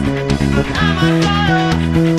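A rock band recording with guitar and a busy electric bass line, played along note for note on an Aria electric bass guitar. The low notes move in quick, even steps.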